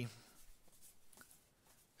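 Faint rustle and scrape of cardboard baseball cards being slid and flipped through by hand.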